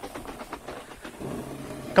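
A plastic mannequin being dragged over grass: faint, irregular scraping and rustling with light footsteps.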